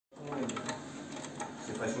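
Hand ratchet with a socket extension clicking as it turns a bolt on a motorcycle's exhaust mounting: a few light, uneven clicks.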